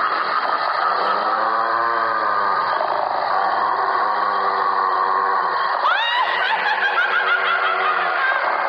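Spooky Halloween sound-effect track: drawn-out sinister laughter over an eerie sustained background, with a rising wail starting about six seconds in.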